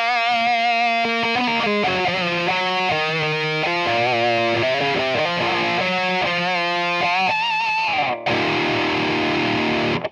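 High-gain distorted eight-string electric guitar through an Axe FX III's Soldano SLO-100 lead model, boosted by a TS808 overdrive model set with gain at zero and level at ten. It plays a run of picked notes with wide vibrato, then a held chord that rings out and is cut off suddenly at the end.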